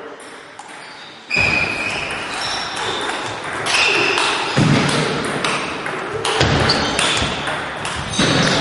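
Table tennis ball being hit back and forth, sharp clicks of ball on bat and table coming thick and fast from about a second in. Voices in the hall are heard alongside.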